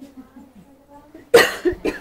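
A person coughs twice in quick succession, loudly, about a second and a half in, over faint talk.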